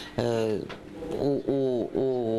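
Only speech: a man talking slowly.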